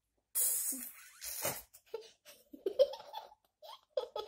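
A young girl giggling: a couple of breathy bursts of laughter, then a run of short, quick giggles.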